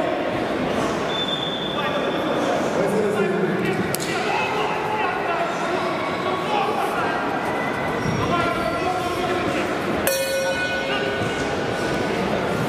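Many voices talking and calling out in a large, echoing sports hall. There is a sharp click about four seconds in. Near the end comes a short ringing ping, the signal to start the bout.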